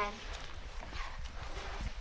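A paper page of a hardback picture book being turned: a soft rustle with a few light, irregular knocks, over a steady background hiss and low hum.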